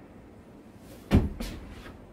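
A medicine ball thrown two-handed hits the golf simulator's hitting screen with a loud thump just over a second in, followed a moment later by a second, lighter knock.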